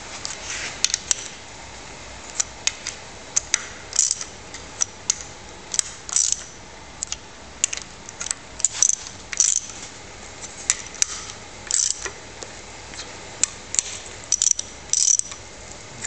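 Half-inch hand ratchet clicking in short, irregular runs with sharp metallic clinks as the head-puller studs are wound down onto the head bolts, jacking the aluminium cylinder head of a Jaguar V12 off its block.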